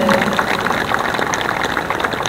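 Audience applauding: a steady, even clapping.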